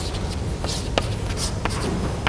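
Chalk on a chalkboard drawing a quick series of short strokes: scratchy strokes and sharp taps, roughly two a second.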